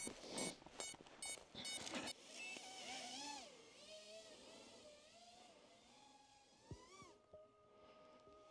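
Faint whine of an FPV quadcopter's motors, rising and falling in pitch as the throttle changes. It is preceded by a few evenly spaced clicks in the first two seconds.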